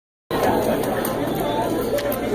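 Indistinct chatter of several overlapping voices, cutting in abruptly a moment after the start.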